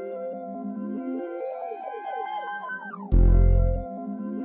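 Looped dark synth arpeggio, a repeating run of notes sliding downward in pitch, with a loud deep sub-bass note hitting about three seconds in.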